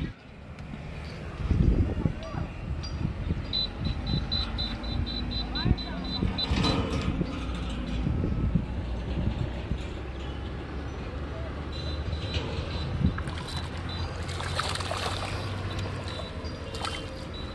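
Outdoor riverbank ambience with a low steady rumble. Near the end a hooked tilapia splashes and thrashes at the water's surface as it is pulled in on the line.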